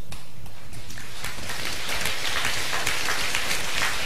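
Audience applauding: a dense patter of many hands clapping that swells in over the first second and then holds steady.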